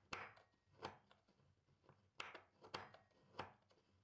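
Kitchen knife chopping shaved dark chocolate on a wooden cutting board: about five quiet, irregular chops, each a brief crunch of blade through chocolate onto the board.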